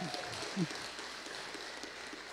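Faint room noise in a reverberant hall with a couple of brief, distant voice sounds near the start, a pause between a speaker's sentences.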